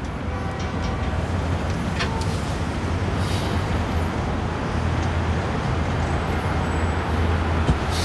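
City street traffic: a steady low rumble of passing road vehicles.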